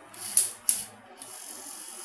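Small electric motor of a hobby robot's metal-strip gripper arm closing the jaws: two sharp mechanical clicks, then a steady high-pitched motor whine from about a second in.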